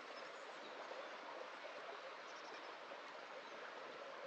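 Shallow creek running over stones, a soft, steady rush, with a few faint high ticks around the middle.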